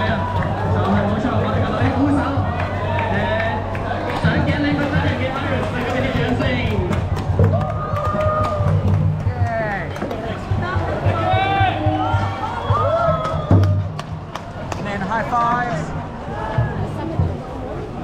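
Voices of a crowd talking over music, with a steady low hum underneath.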